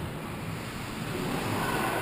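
Steady, even ambient noise of an ice hockey rink during play, with no distinct single event.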